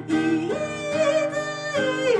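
A singer's voice over strummed acoustic guitar: the voice glides up about half a second in, holds a long note with a slight waver, and falls away near the end.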